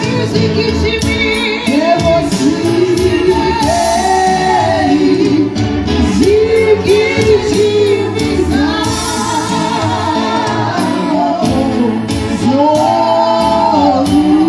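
Gospel music: singing with held, wavering notes over sustained accompaniment and a steady beat of about three strokes a second.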